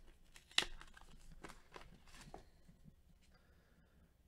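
Faint crinkling and clicking of a plastic-sleeved printing plate being worked loose from its cardboard pack: one sharp click about half a second in, then scattered softer crackles that die away after a couple of seconds.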